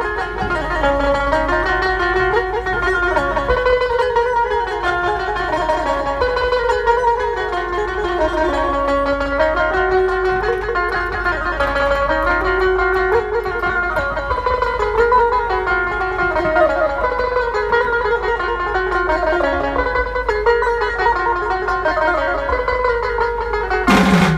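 Dhumal band music: an amplified lead instrument plays a slow melody that winds up and down, over a steady low bass hum, with no drums.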